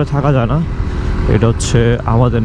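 A man's voice over the steady running of a Suzuki GSX-R150 motorcycle's single-cylinder engine at road speed; the voice stops for most of a second and comes back near the end.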